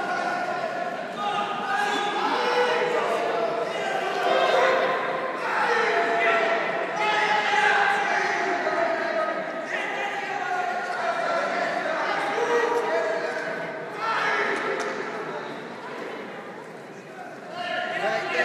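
Several voices calling out and talking over each other, echoing in a large sports hall.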